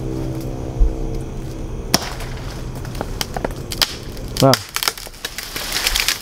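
Tree branch cracking and snapping as it is pulled down, a series of sharp cracks from about two seconds in, with leaves rustling as it falls. A steady low hum runs under the first half.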